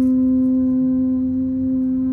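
A wind instrument sounding one long, steady low note with a clear row of overtones, held without a break.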